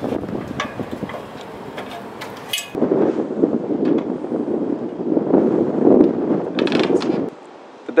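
Aluminium extension ladder clicking and clanking as someone climbs it up through a roof hatch. This is followed by several seconds of dense rustling noise that cuts off shortly before the end.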